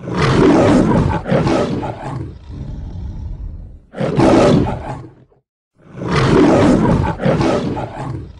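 Lion roaring: three loud bouts, each a second or two long, with short breaks between them.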